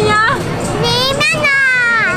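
A toddler's excited high-pitched squeal of delight: one long drawn-out cry that slowly falls in pitch.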